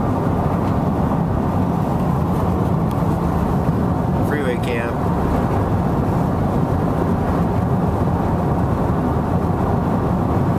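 Steady road and engine noise inside a moving car's cabin in highway traffic. A brief chirp comes about four seconds in.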